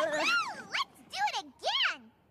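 Cartoon pony characters' voices making a quick series of short, wordless cries, each rising and then falling in pitch.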